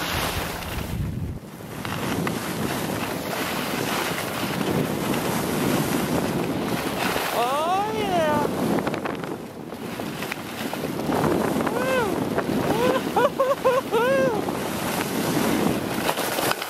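Steady wind rushing over an action camera's microphone as a skier moves fast downhill, with the hiss of skis sliding on snow underneath.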